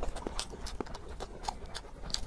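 A person chewing a mouthful of meat, with a run of short wet mouth clicks and crackles, several a second.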